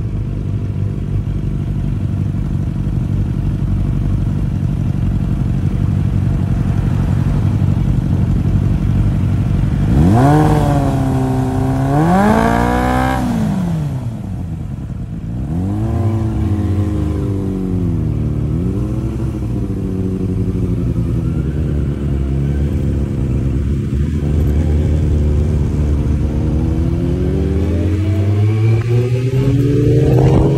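Suzuki Bandit inline-four motorcycle engine heard from the rider's seat. It runs at low revs at first. About ten seconds in it is revved sharply up and down twice, then settles to a steady lower note, and its pitch climbs steadily near the end as the bike accelerates.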